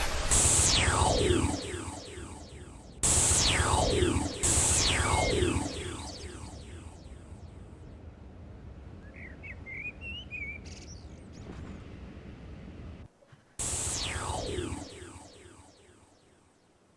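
Cartoon sound effects: a run of whistle-like sweeps, each starting suddenly and sliding down in pitch, heard in bursts near the start, twice about three to four seconds in and again near the end. A short twittering chirp comes about midway.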